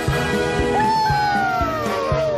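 Cartoon background music with a regular beat. About a second in, a pitched sound slides slowly down in pitch for more than a second, with a second falling slide overlapping it near the end.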